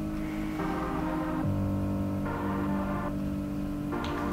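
Background music: soft sustained chords that change a little under once a second.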